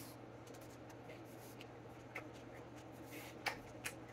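Faint chewing of a crunchy pickled radish, with a few soft crunches or clicks about two seconds in and again near the end, over a steady low hum.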